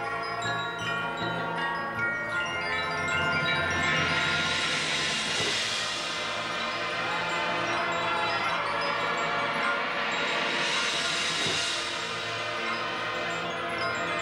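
Soft passage by a marching band: the front ensemble's mallet percussion and chimes ring over sustained chords. A shimmering swell rises twice, about four seconds in and again about ten seconds in.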